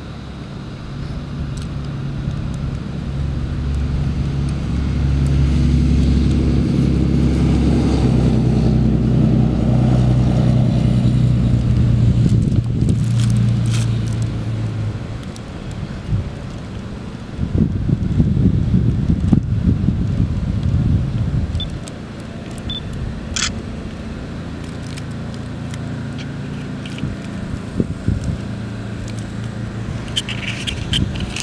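A low motor hum with a steady pitch that swells over several seconds and then fades. It is followed by a few seconds of rough low rumble and a single sharp click later on.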